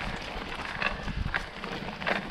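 Mountain bike rolling over a dirt trail: tyres on grit and small stones, with irregular clicks and rattles from the bike and a low rumble of wind on the microphone.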